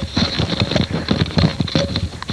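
Hurried footsteps: a rapid, irregular run of taps and clatter, a sound effect of several people rushing along.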